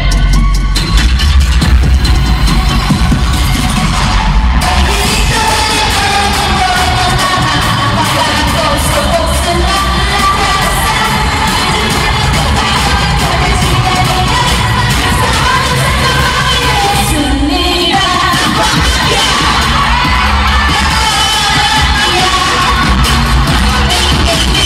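Women singing a pop song with Filipino lyrics into handheld microphones over a karaoke backing track with a steady bass, played loud through an arena PA, with the crowd cheering along.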